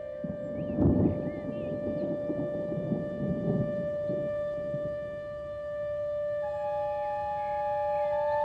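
A musical drone holds one steady note throughout while a deep rumble of thunder swells about a second in and dies away by about four seconds. A second, higher held note joins near the end.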